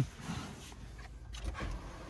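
Faint rustling and soft bumps of a person shifting across a car's rear seat and climbing out, over a low background rumble.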